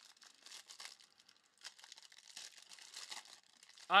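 Faint, irregular crinkling and rustling of plastic trading-card pack wrappers and sleeves being handled.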